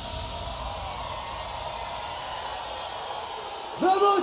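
Electronic dance music breakdown with no beat: a steady hiss-like noise wash with faint held tones underneath. Just before the end, a loud sustained voice or synth note cuts in.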